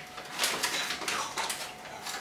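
White wrapping paper crinkling and rustling by hand as items are unwrapped, crackling in a few short, uneven spells.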